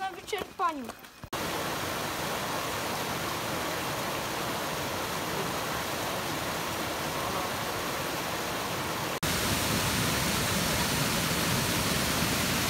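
Rushing mountain stream tumbling over rocks, a steady even rush of water. About nine seconds in it cuts abruptly to a louder rush from a waterfall spilling over a stone weir.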